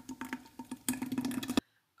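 Thick banana smoothie sliding out of a blender jug into a bottle in wet plops and irregular small clicks. It cuts off abruptly a little before the end.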